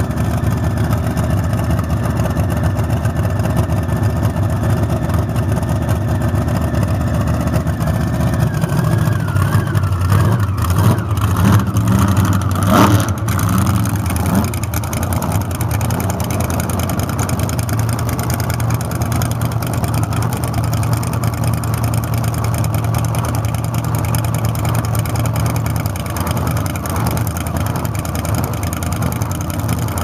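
Supercharged V8 of a dragster idling loudly and steadily. About a third of the way in it swells briefly, with a few sharp knocks, then settles back to the same steady idle.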